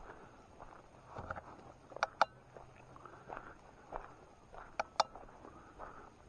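Footsteps of a person walking at a steady pace on a grassy dirt trail. Two pairs of sharp clicks, one about two seconds in and one about five seconds in, stand out as the loudest sounds.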